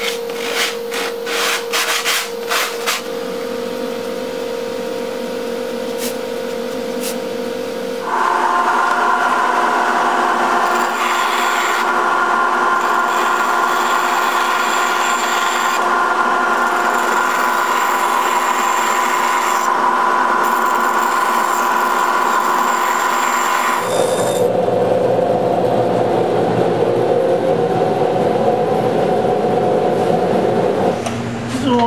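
Hand sanding block rubbing along the edge of a kiteboard core in quick strokes for the first few seconds, over a steady machine hum. From about 8 seconds a band saw runs steadily, cutting the core, and its sound changes, lower and heavier, about 24 seconds in.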